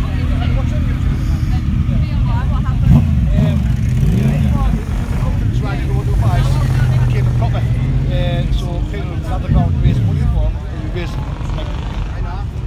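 Motorcycle engine running close by, blipped up and down a few times with a steadier stretch in the middle, over a crowd talking.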